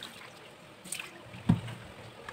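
Hand rubbing and swishing raw rice grains in water in a steel bowl, the water lightly sloshing. A single dull thump, the loudest sound, about one and a half seconds in.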